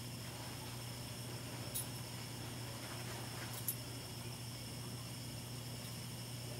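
Quiet room tone with a steady low electrical hum and two faint short ticks, about two and three and a half seconds in.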